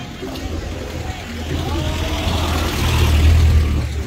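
A motor vehicle's low rumble on the street, swelling to its loudest about three seconds in, with voices faintly behind it.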